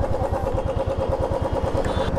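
Motorcycle engine idling steadily with an even, fast low pulsing.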